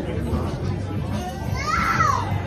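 Steady background chatter of a busy restaurant. Near the end, a high-pitched voice rises and then falls.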